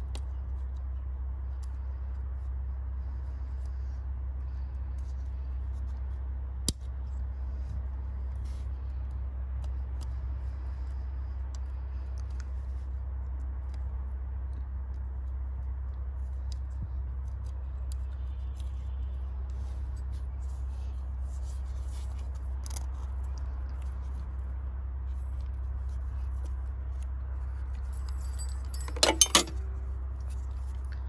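Metal tools and engine parts being handled: scattered faint clicks, one sharp click about seven seconds in, and a brief loud metallic jangle near the end, over a steady low rumble.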